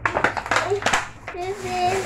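Clear plastic packaging of a child's cup crackling and clicking as it is handled and opened, a run of irregular sharp crackles for about the first second. Then a child's voice, drawn out.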